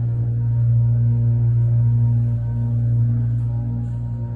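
Elevator running as the car travels up one floor: a loud, steady low hum from its drive machinery, swelling slightly during the ride.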